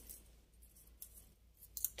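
A few faint, light clicks of steel wire heddles knocking against each other as a thread is drawn through their eyes, mostly in the second half.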